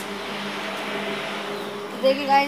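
A machine running steadily: a constant hum with a rushing hiss over it.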